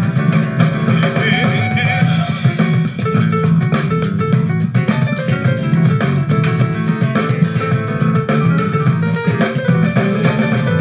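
Live band playing an instrumental passage of the song, with no singing: guitar and drum kit, with piano.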